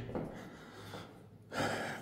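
Quiet room tone, then a short, sharp intake of breath about a second and a half in.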